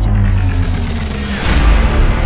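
Intro music with a heavy, deep bass drone and sustained tones, and a short hissing swish near the end as the title card changes.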